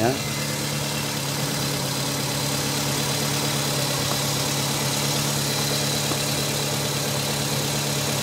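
A car engine idling steadily with an even hum.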